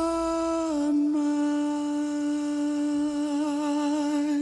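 Closing note of a musical number: one male voice holding a long, soft hummed note that steps down in pitch a little under a second in and wavers slightly near the end.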